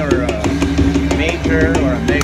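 Konami Riches with Daikoku Triple Sparkle slot machine playing its electronic bonus music with a steady beat while it tallies line wins one after another in the free-games feature.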